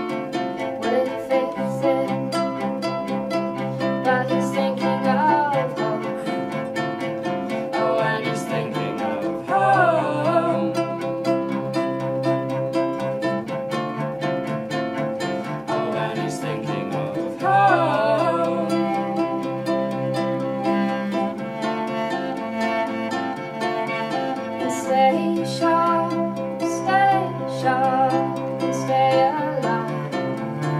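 Live acoustic folk trio of acoustic guitar, ukulele and bowed cello playing a passage of the song without sung lyrics.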